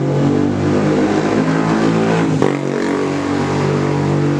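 Honda Beat FI scooter's single-cylinder fuel-injected engine running steadily at idle, with one brief click about halfway through.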